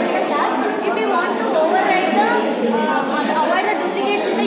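Speech only: a woman talking without pause.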